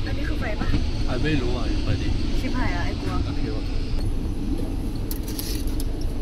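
Steady low rumble of a moving passenger train heard from inside a sleeper carriage, with voices over it and a laugh about four seconds in.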